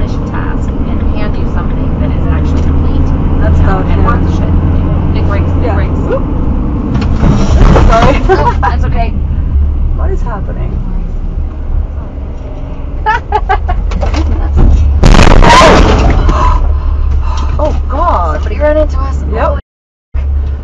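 Steady low road and engine rumble inside a moving car, with people talking over it. A loud burst of noise that reaches across all pitches sounds about fifteen seconds in and lasts a second or so.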